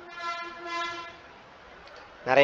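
A steady, high-pitched horn-like tone lasting about a second, swelling twice before it stops.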